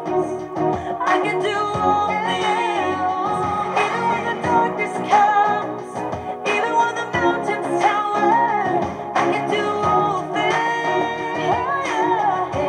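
A woman singing a contemporary Christian pop-rock song over a full band.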